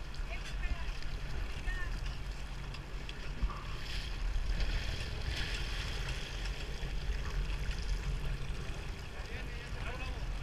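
Boat engine rumbling low and steady, with wind on the microphone. From about four to six seconds in, water splashes as a hooked dorado thrashes at the surface beside the hull.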